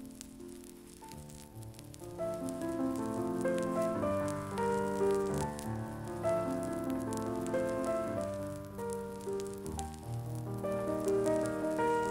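Piano music, soft at first and louder from about two seconds in, with the crackle and hiss of an old transcription-disc recording.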